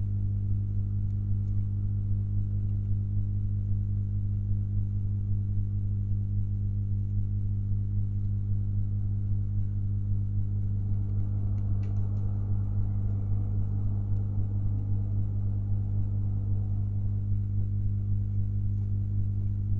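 Steady electrical mains hum, a low drone with higher overtones, holding level throughout. A faint rustle and a couple of light clicks come about two-thirds of the way through.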